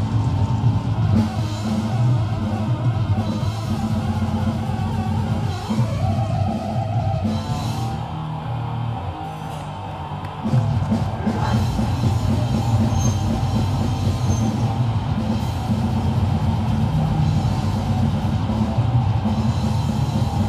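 A grindcore band playing live through a PA, with distorted guitars and drums. The playing thins out and drops a little in level from about eight seconds in, then the full band crashes back in about ten and a half seconds in.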